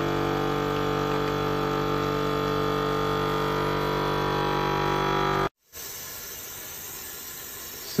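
Countertop vacuum sealer's pump motor running with a steady hum while it draws the air out of a sealing bag. It cuts off abruptly about five and a half seconds in, leaving a fainter steady hiss.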